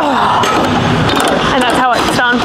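A woman's voice trailing off in a groan at the end of a set, heard close on a clip-on microphone against a loud, noisy haze, then a knock as the rear-delt fly machine's weight stack comes to rest.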